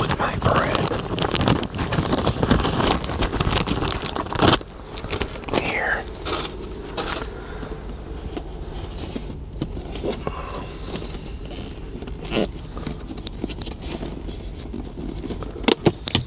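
Plastic zipper bag crinkling as it is handled, dense for the first few seconds, then quieter handling noises with a couple of sharp clicks near the end.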